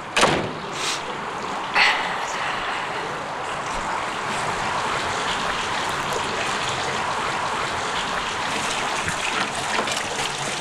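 A heavy front door shutting with a sharp knock just after the start and a second knock about two seconds in. After that comes a steady rushing noise, like running water.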